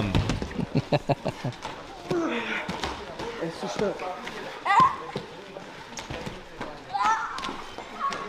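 A man laughs briefly, then repeated thuds of wrestlers' bodies landing on the training mats in a sports hall, with voices from the hall in between.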